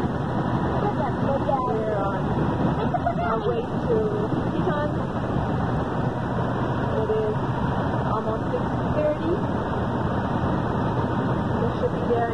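Steady road and engine noise inside a moving motorhome, with faint, indistinct voices talking now and then over it.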